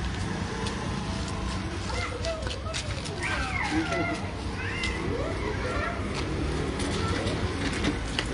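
Indistinct voices of several people, with a few rising and falling calls around the middle, over a steady low hum and scattered clicks.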